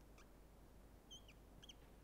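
Faint, short squeaks of a marker drawn across a whiteboard, a few of them about a second in and a little after, over near-silent room tone.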